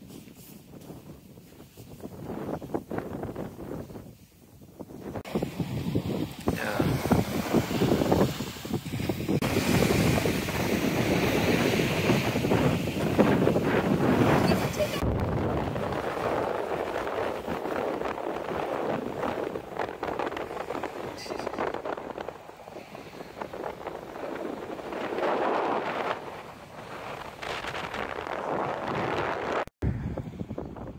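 Wind buffeting the microphone, a rough rushing noise that swells and drops, with a few abrupt changes where the footage cuts.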